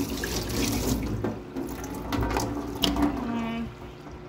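Kitchen tap running into a stainless steel sink while hands are rinsed under the stream. The rush of water drops away about a second in, leaving a few splashes and knocks.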